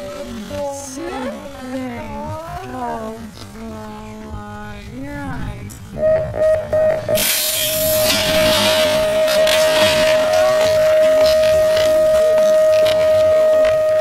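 BMX starting-gate cadence played back at a third of normal speed. The recorded call is drawn out and very deep, and about six seconds in it gives way to a long, steady tone. Soon after, a loud clattering of metal and bikes begins as the riders roll down the start ramp.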